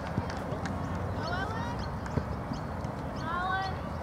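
Distant shouts of girls calling on a soccer pitch, twice, over steady outdoor background noise, with a single soft knock about two seconds in.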